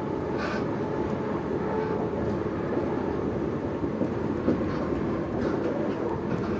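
Steady running noise inside a moving passenger train carriage: an even low rumble of wheels on the rails, with a few faint clicks.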